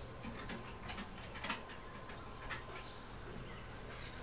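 Payphone keypad buttons and handset clicking faintly as a number is dialled: a handful of short, sharp clicks, the loudest about a second and a half in.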